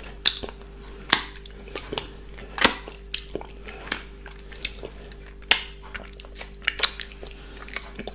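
Close-miked chewing of a mouthful of chicken burger: irregular sharp clicks and crackles of mouth sounds, roughly one or two a second.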